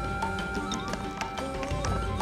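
Background music: held tones and a wavering melody line over light, regular percussive ticks.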